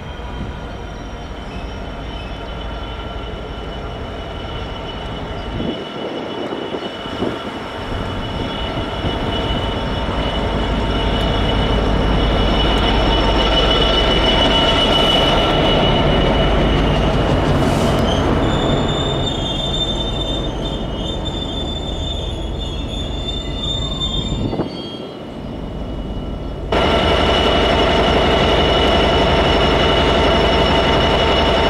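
Freight train of loaded hopper wagons behind Class 66 diesel locomotives rolling slowly past on curved track, its wheels squealing in steady high tones over the rumble of the wagons. Near the end the sound jumps suddenly to a louder, closer Class 66 locomotive passing.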